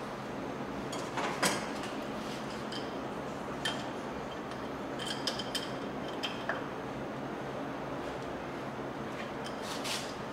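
Hand handling of the metal discharge cap and fittings on a hydraulic diaphragm metering pump head: light rubbing and scraping with a few short clicks and taps over a steady background hiss.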